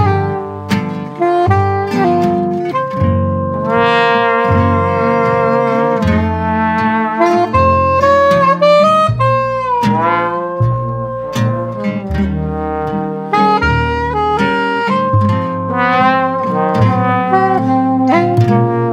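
New Orleans jazz band playing: soprano saxophone and trombone lines over acoustic guitar and a low bass line. About halfway through, a lead note bends down and back up.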